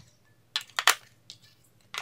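A few sharp plastic clicks and taps, clustered about half a second to a second in, from the plastic battery cover of a TV remote being handled and snapped back onto its case.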